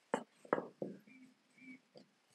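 Three short knocks in quick succession in the first second: a bamboo rolling pin and hands handling stacked dough rounds on a wooden board. Two faint short tones follow.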